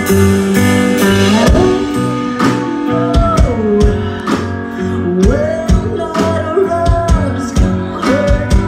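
A live rock band plays with electric guitar, bass and drums. Drum hits come in about a second and a half in, and a woman's voice starts singing the melody about a second later.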